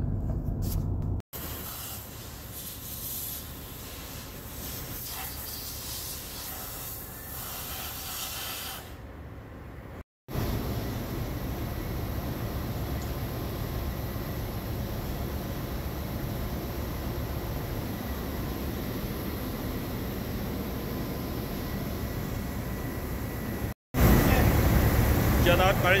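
Steady background hiss and rumble of machinery or ventilation noise, broken by two abrupt cuts, with a man's voice starting near the end.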